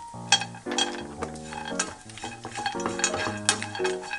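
Almonds clicking into a nonstick frying pan of small dried anchovies, then a wooden spatula stirring and scraping the anchovies and almonds as they fry in a little oil, with sharp clicks throughout. Light background music plays along.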